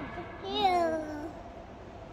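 A young child's high-pitched whiny call, one drawn-out cry that slides downward in pitch, starting about half a second in and lasting under a second.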